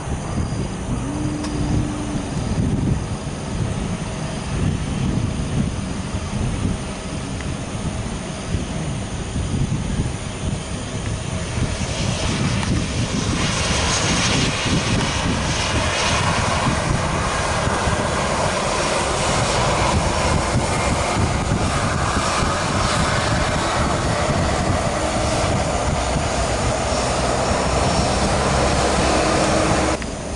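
Jet airliner engines running on the ground: a low rumble at first, growing into a loud, steady roar from about 12 seconds in.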